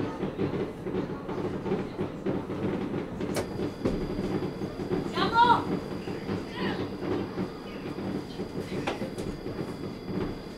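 Tram running slowly, heard from inside the driver's cab: a steady low rumble of motors and wheels on the rails. There is a brief high-pitched rising sound about five seconds in and a couple of sharp cracks.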